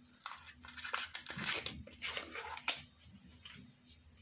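Thin plastic yogurt pot crinkling as it is squeezed to empty the yogurt into a glass mixing bowl: a run of short crackles that dies away about three seconds in.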